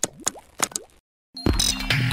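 Logo-intro sound effects: a quick run of short pops with rising pitch sweeps for about a second, a brief gap of silence, then a loud music sting starting about one and a half seconds in.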